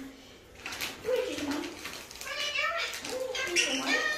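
Parrot talking in a high, speech-like voice, several short babbled phrases, typical of an Indian ringneck parakeet mimicking words.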